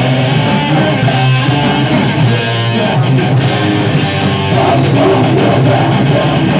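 Metal band playing live, loud and dense, with electric guitar and bass guitar; a held note rings out about two to three seconds in.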